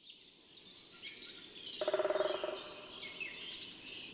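Several small songbirds chirping and singing together in many quick high notes, fading in at the start. About two seconds in, a lower, held sound joins for about a second.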